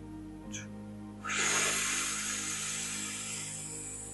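A long breath out through the mouth. It starts suddenly about a second in and trails off over the next two seconds: the exhale stage of a belly-breathing exercise, after breathing in through the nose and holding. Soft background music with sustained tones runs under it.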